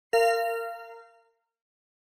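A single bell-like chime, struck once and ringing out, fading over about a second: the segment-end ding of a CCL interpreting test, marking the end of a dialogue segment and cueing the interpreter to speak.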